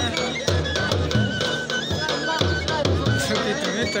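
Churahi folk dance music: a drum beating a steady rhythm under a high held melody line.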